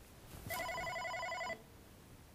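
OpenStage 40 desk phone ringing for an incoming call: one burst of its trilling electronic ring, about a second long, starting about half a second in.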